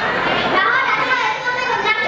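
A young boy speaking into a microphone, delivering a speech in a high child's voice.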